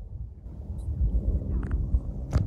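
Wind buffeting the microphone of a handheld outdoor video recording: a steady low rumble, with a couple of faint clicks near the end.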